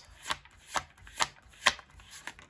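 A deck of tarot cards shuffled by hand, with four sharp card slaps about two a second and a light rustle of card stock between them.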